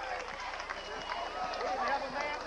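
Many voices of players and spectators calling and shouting over one another at a football game, with no single voice clear.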